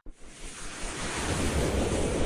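Intro sound effect: a rushing whoosh of noise that starts suddenly and swells, with a rising sweep coming in during the second half.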